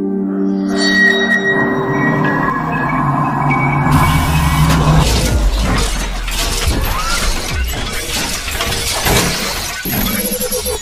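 Cinematic intro music: sustained synth tones, then a sudden deep rumbling hit about four seconds in, followed by crashing, shattering sound effects through the second half.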